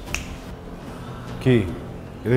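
A single sharp click just after the start, then a short burst of a man's voice about one and a half seconds in, over a faint low steady hum.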